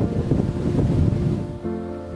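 Wind buffeting the camera microphone, a low, uneven rumble. About one and a half seconds in, soft background music with held notes comes in under it.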